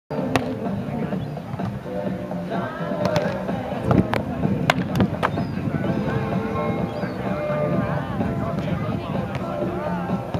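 Music playing under people talking, with a few sharp slaps. The first slap comes just as a player hits the volleyball, and the others come between about three and five seconds in.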